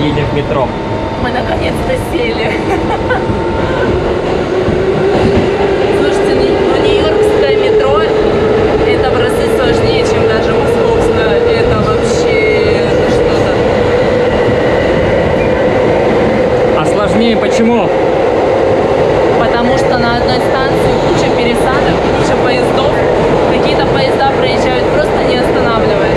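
A New York City subway train running, heard from inside the car. A motor whine rises in pitch over the first several seconds as the train gathers speed, then holds steady over a constant rumble from wheels on rail, with scattered clicks.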